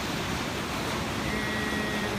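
Ocean surf washing against a rocky lava shoreline, with wind, making a steady rush of noise.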